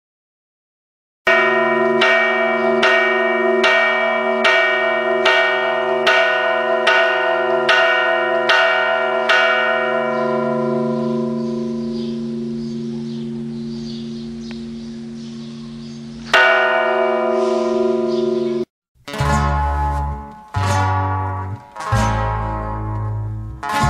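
A church bell tolling: about eleven strikes a little under a second apart, then the ringing is left to die away. One more strike follows several seconds later. Near the end, music with plucked strings begins.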